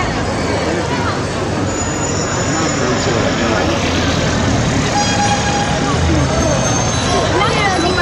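A crowd of cyclists riding past: many people talking and calling out at once over a steady wash of street and tyre noise, with a few short high tones ringing out now and then.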